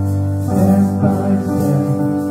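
Congregation singing a worship song with instrumental accompaniment.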